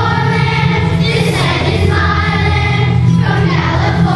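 A children's choir singing a patriotic song in unison over a steady instrumental accompaniment, holding notes with short breaks between phrases.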